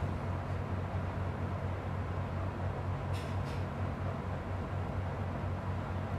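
Laminar airflow cabinet's blower running with a steady whir and low hum. A couple of faint, brief rustles or clinks come a little after halfway through.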